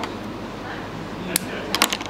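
Small metal fishing tackle, a swivel on nylon line, clinking as it is handled: a light click past the middle and a quick run of clinks near the end.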